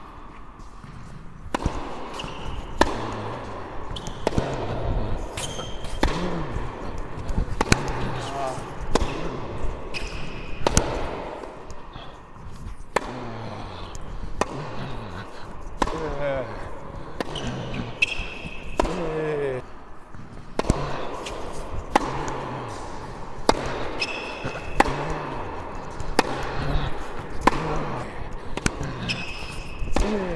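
A tennis rally on an indoor hard court: sharp hits of the ball off Wilson Clash V2 rackets and its bounces on the court, roughly one impact a second, each echoing briefly in the hall.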